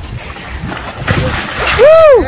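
A large goliath grouper released over the side of a boat splashes into the sea about halfway through. Near the end comes a short, loud whoop from a person, its pitch rising and then falling.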